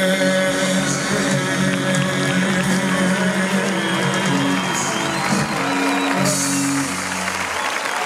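Live band holding the final notes of a song while a large concert crowd applauds and cheers. The music stops near the end, leaving the applause.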